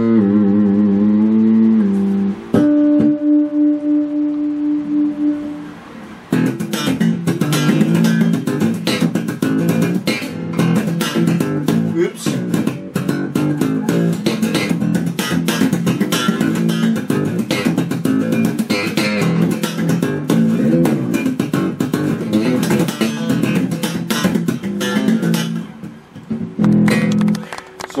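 Electric bass guitar, freshly restrung, being play-tested. A few held notes with a wavering pitch, then one long sustained note, then about twenty seconds of fast, percussive plucked lines with a nasal tone.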